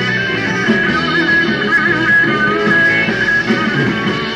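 Live rock band playing an instrumental passage, an electric guitar lead with bent, wavering notes over the band.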